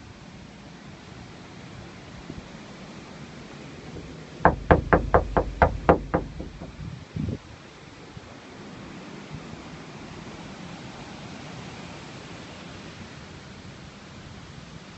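A quick run of about nine knocks in under two seconds, starting about four and a half seconds in, then one more short knock about a second later. Between them there is a steady background hiss.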